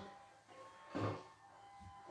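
Mostly quiet room, with one brief soft sound about halfway through as a man sits down on a chair holding a classical guitar.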